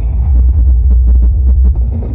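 A live band plays loud amplified music through a PA, recorded close to the stage. Booming bass dominates, with sharp drum hits over it.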